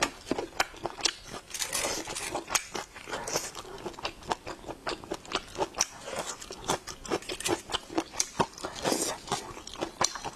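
A person chewing and biting glazed meat close to a clip-on microphone, with many short mouth clicks, several a second.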